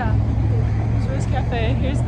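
Quiet talking over a steady low rumble.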